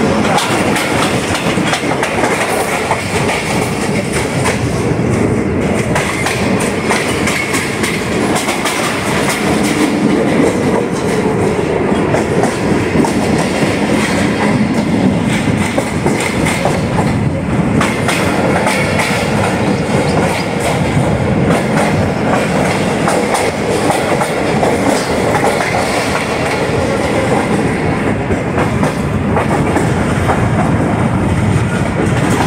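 Pakistan Railways Tezgam Express passenger coaches running along the track, heard from outside the coach side: a loud, steady rolling rumble of wheels on rails with frequent irregular clicks and clatter over the rail joints.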